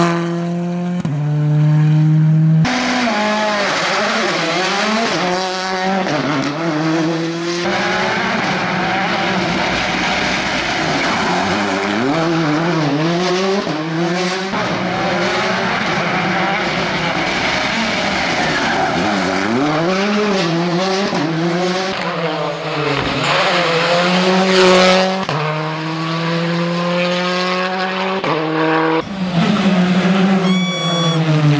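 Hyundai rally car's turbocharged four-cylinder engine revving hard as it passes, its pitch climbing and then dropping again and again through gear changes and lifts. This happens over several separate passes.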